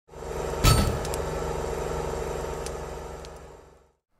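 Intro sound effect: a deep impact hit about half a second in, followed by a humming drone of several held tones. The drone fades away to nothing by the end.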